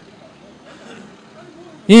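Racing kart engines running faintly in the distance, with a slight swell about a second in; a man's commentary voice starts near the end.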